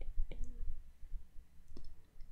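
A few light, separate clicks of a stylus tapping on a drawing tablet during handwriting: one at the start, another about a third of a second in, and one more near the end.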